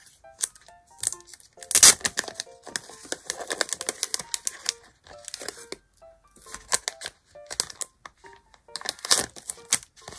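Crinkling and rustling of a sticker pack's packaging as it is handled and the sheets are slid out, in irregular bursts, loudest about two seconds in. Soft background music of short chime-like notes plays underneath.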